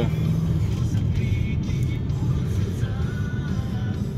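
Steady engine and road noise inside a moving car's cabin, with music playing underneath.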